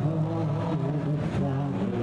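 Live acoustic folk music: acoustic guitars and upright bass playing a slow tune, with a held melody line stepping between notes above the low sustained bass notes.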